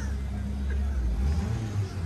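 Low, steady rumble of a nearby vehicle engine running, with a faint steady hum above it and a slight change in the rumble about a second and a half in.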